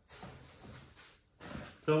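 Packaging rustling for about a second and a half as a boxed item and its wrapped cord are pulled out and handled. A man starts speaking near the end.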